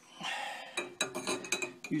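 Metal parts clinking and scraping as an old tapered roller bearing and a metal sleeve-installer tool are handled and fitted onto a steel trailer axle spindle. A soft scrape comes first, then a quick run of light clinks.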